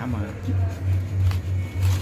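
Aluminium foil crinkling in a few short bursts as a hand works it open around a baked fish, over a steady low hum.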